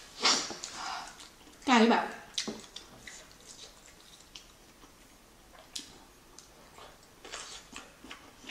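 A person sniffing into a tissue, her nose running from the spiciness of the tteokbokki, followed by a short voiced breath out. Then come soft mouth clicks and chewing, with another sniff near the end.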